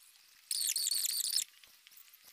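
A shrill burst of several high-pitched squeaky tones, about a second long, starting about half a second in and cutting off abruptly.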